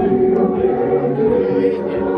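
A choir singing, several voices holding steady notes.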